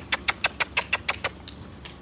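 A rapid, even run of sharp clicks, about seven a second, thinning out and stopping about a second and a half in.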